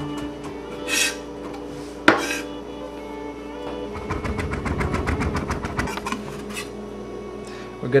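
Chef's knife chopping shallots on a wooden cutting board: a single sharp knock about two seconds in, then a rapid run of quick chops lasting a couple of seconds. Soft background music plays under it.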